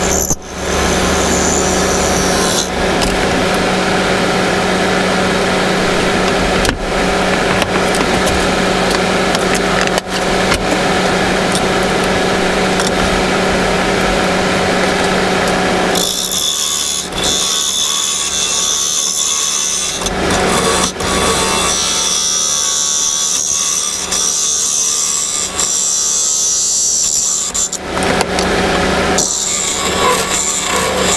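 Wood lathe running with a steady hum while a hand-held turning tool cuts a spinning wooden spindle, a continuous scraping, shaving noise. About halfway through, the cutting turns lighter and higher-pitched as a different tool takes finer cuts, with a few brief breaks where the tool lifts off.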